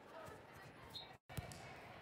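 A volleyball bounced on a hardwood gym floor: one sharp thud about a second and a half in, over a faint murmur of voices in a large hall.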